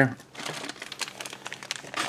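Thin clear plastic parts bags from a model kit crinkling as they are handled: a soft, irregular run of light crackles.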